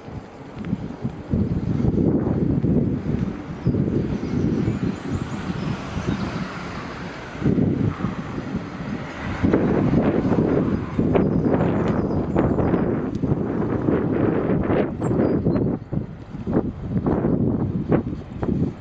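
Wind buffeting the microphone of a camera on a moving bicycle: a low rumbling rush that rises and falls in gusts, dropping briefly about halfway through.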